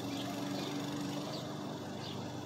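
Lawn mower running steadily, a faint, even drone.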